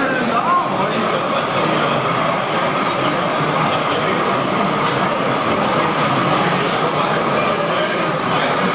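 An O-scale narrow-gauge model diesel locomotive runs slowly, hauling log wagons, with a faint steady whine. Behind it is a continuous murmur of many voices.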